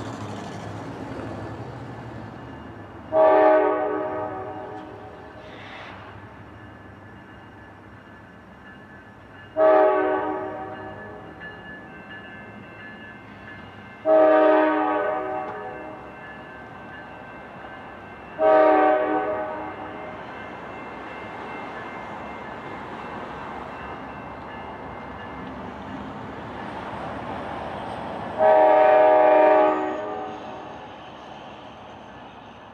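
Freight locomotive's multi-chime air horn sounding five separate blasts, at about 3, 10, 14 and 18 seconds and again near the end, the last one the longest, each cut off sharply and fading away in echo. Between the blasts the locomotive's diesel engine runs steadily as it approaches a grade crossing.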